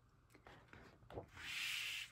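A sheet of scrapbook paper being slid across the stack and turned over. It makes a soft rubbing swish of paper on paper that starts about a second and a half in and grows louder.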